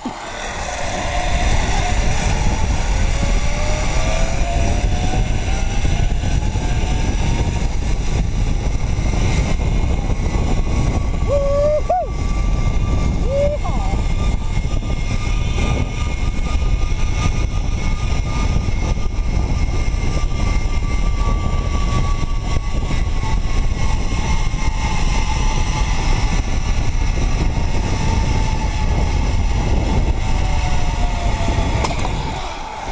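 Zipline trolley pulleys running along a steel cable: a whine that rises in pitch as the rider picks up speed, holds, and falls near the end as the trolley slows, under heavy wind rush on the harness-mounted microphone.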